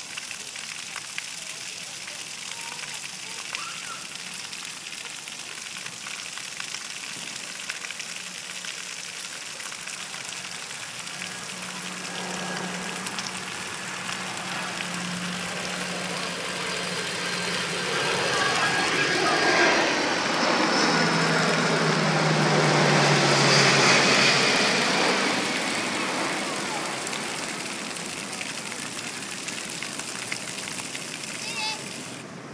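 Splash pad fountain jets spraying steadily. Through the middle a motor vehicle passes on the nearby street and becomes the loudest sound: it builds up, its engine note drops in pitch as it goes by, then fades away.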